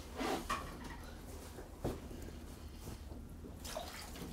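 Quiet water sounds from an ice-fishing hole: faint drips and a few soft clicks, then a sloshing splash near the end as a fish is pulled up to the surface of the hole.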